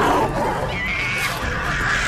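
Wild-animal cries used as sound effects over a scuffle, with a high, wavering screech about a second in.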